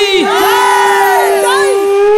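A group of voices shouting and whooping together, their pitches sliding up and down, over one steady held note from the accompaniment.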